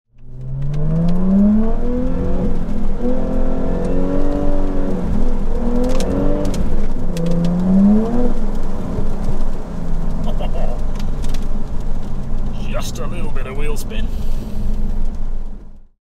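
Jaguar F-Type's supercharged V6 engine heard from inside the cabin, accelerating hard: the engine note climbs and drops back about three times as it is taken up through the gears, then settles to a steadier lower note before cutting off near the end.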